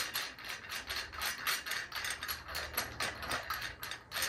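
Rapid, uneven run of small ratchet-like clicks as a part on an anodised aluminium hookah stem is twisted by hand.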